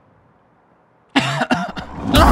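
Near silence, then a little over a second in a person lets out a sudden, loud, harsh cough, with a second hack just after.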